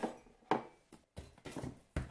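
A ceramic mug being handled and set down on a hard kitchen worktop: a few short knocks and clinks, with a sharp one about half a second in and another near the end.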